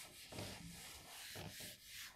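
A handheld eraser wiping chalk off a green chalkboard: faint, repeated back-and-forth rubbing strokes.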